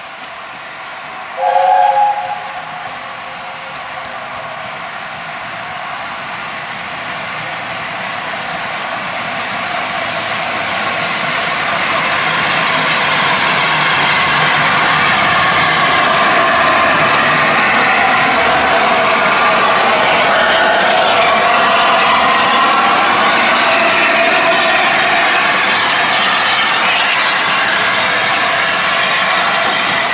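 A steam locomotive's chime whistle gives one short blast, then LNER A4 Pacific No. 4498 passes close by with steam hissing from its cylinders, the hiss swelling over about ten seconds and staying loud.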